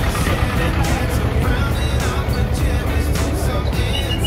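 Music playing over the motor of a small wheeled road train, a fairground ride with a locomotive-style tractor unit and open carriages, passing close by.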